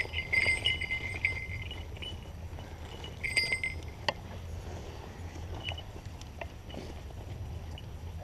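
Small falconry bells on the Harris's hawks jingling in short bursts through the first second and again briefly about three seconds in, over rustling in dry grass and a low rumble.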